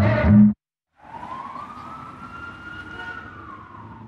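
Music stops about half a second in. After a brief silence, a siren sounds in one long, slow rise and fall of pitch over steady low city noise.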